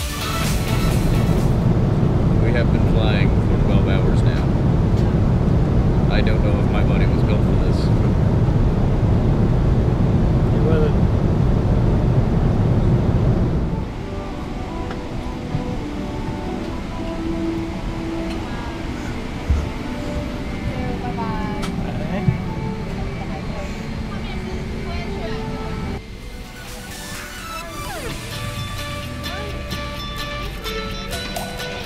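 Background music over the steady low rumble of a jet airliner's cabin in flight. About fourteen seconds in the rumble drops away, leaving the music with faint voices in the cabin.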